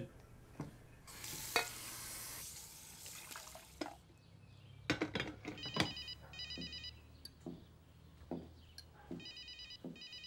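A phone ringing: a rapid, pulsed electronic ringtone in two bursts, the second starting near the end. Before it come a brief hiss and a few small clicks and knocks.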